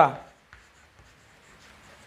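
Chalk scratching faintly on a chalkboard as words are handwritten, just after a spoken word ends at the very start.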